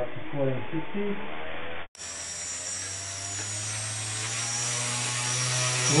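A brushless outrunner motor on a tricopter spinning its propeller at a steady test throttle. It makes a steady hum with a high whine above it, starting after a cut about two seconds in.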